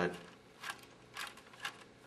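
A few faint, short clicks about half a second apart as a Phillips screwdriver turns screws into plastic radiation-shield plates.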